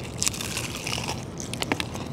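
Crunching bites into crispy fried chicken, the crust crackling in a run of sharp crunches.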